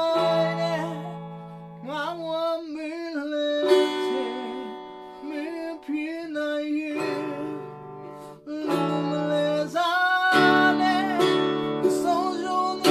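A man singing a Burmese song while accompanying himself on strummed acoustic guitar chords.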